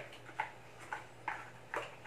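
A series of light clicks from the cardboard phone box and its paper inserts being handled, about two a second, over a faint steady low hum.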